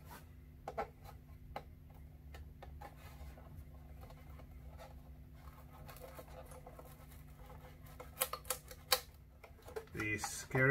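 A thin knife working into the glued seam between a cheap violin's top plate and ribs near the neck: faint scraping with scattered small clicks, then a quick run of sharper clicks about eight to nine seconds in.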